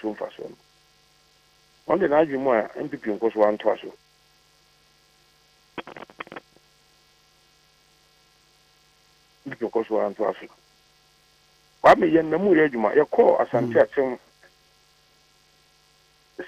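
Steady electrical mains hum with a buzzy row of even overtones, running under short stretches of a voice that is cut off in the highs like speech over a telephone line.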